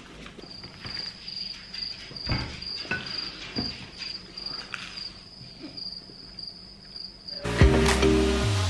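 Cricket chirping sound effect, a single high chirp pulsing a few times a second: the comic cue for an awkward silence. Near the end it cuts off and loud music starts abruptly.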